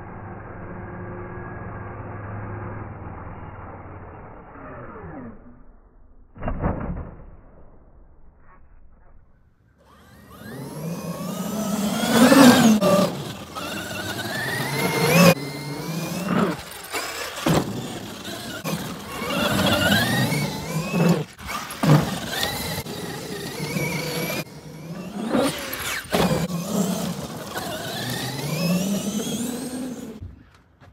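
Traxxas XRT RC monster truck's brushless electric motor whining as it is driven hard on sand, its pitch rising and falling over and over with the throttle, with sharp knocks and sand spray from the paddle tyres. Before that, a muffled dull sound for a few seconds and a single thud.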